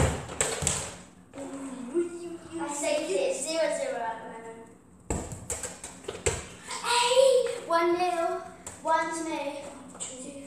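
A child's voice calling out without clear words, in two stretches. There are sharp knocks right at the start and a cluster of them about five to six seconds in.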